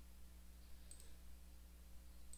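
A single faint computer mouse click about halfway through, over a low steady hum.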